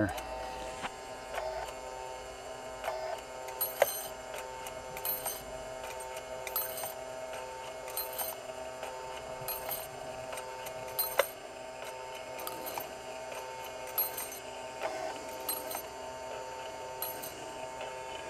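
Small DC gear motor whirring steadily as it turns an eccentric cam in a toothpick dispenser. A short click comes about every 1.5 s, once per turn, as the cam lobe pushes against the toothpicks in the hopper.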